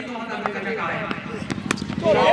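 Two sharp cracks about one and a half seconds in, close together, over faint background crowd voices: a cricket bat striking a tape-wrapped tennis ball.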